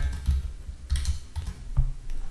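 Computer keyboard being typed on: a handful of separate keystrokes.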